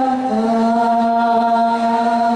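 A group of women singing together in unison, stepping down to a lower note a moment in and holding it as one long sung note.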